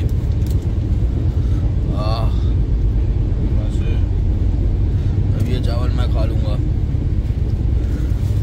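Steady low rumble inside a train passenger coach, the running noise of the train. Short snatches of voices come about two seconds in and again around six seconds.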